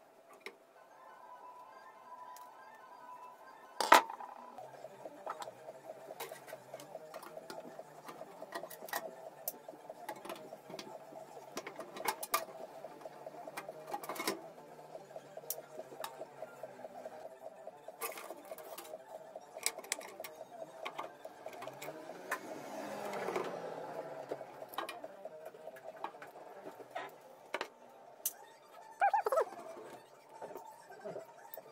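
Scattered light clicks and taps of computer hardware being handled inside an open desktop PC case, with one louder knock about four seconds in, over a faint steady hum.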